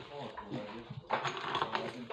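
Speech at a moderate level, words not made out, with faint clicks of handling on the countertop.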